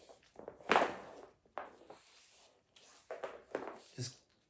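A few short rustling scuffs of a rubber-jacketed extension cord being pulled taut through the hands and dragged over the floor to straighten its twists. The loudest comes just under a second in.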